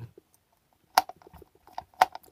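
A screwdriver working at the small plastic ripple disc inside a projector housing: one sharp click about a second in, a few faint ticks, and another click at the end.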